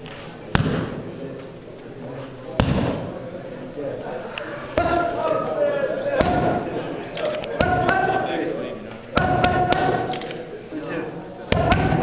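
Boxing gloves smacking into leather focus mitts: a string of sharp punches every second or two, some landing in quick combinations.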